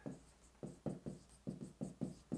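Pen writing on a whiteboard: a quick series of short, separate strokes as handwritten characters go up.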